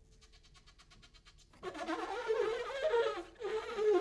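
Saxophone comes in about a second and a half in, after a faint stretch of rapid ticking, and plays wavering, sliding notes that bend up and down.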